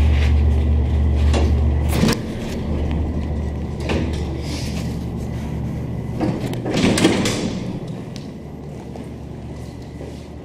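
Vintage Otis traction elevator: the car's low running hum cuts off with a clunk about two seconds in as it stops. Then come the noisy slides of its doors opening and later closing, the loudest near seven seconds in.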